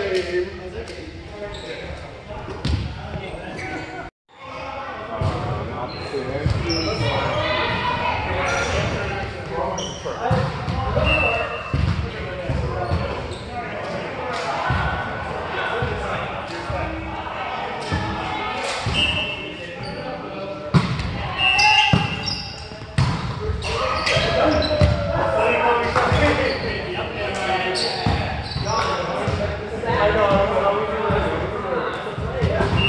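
Volleyballs being struck and bouncing on a gym floor, sharp echoing thumps, over players' voices calling out across a large hall. The sound cuts out for a moment about four seconds in.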